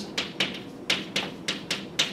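Chalk tapping against a blackboard while writing: an uneven series of sharp taps, several a second.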